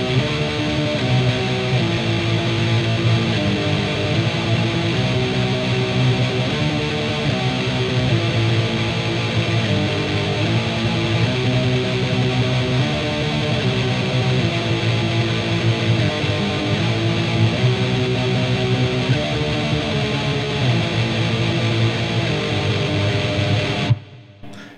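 Distorted Fender electric guitar tremolo-picking power chords on the low strings, tuned slightly above concert pitch, playing a black metal riff that changes chord every second or so.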